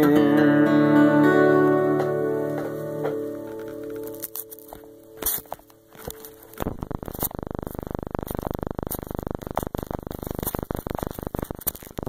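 A final strummed chord on an acoustic guitar rings out and fades away over about five seconds. A little past halfway, a dense, rapid crackling and rustling starts close to the microphone and runs on: handling noise.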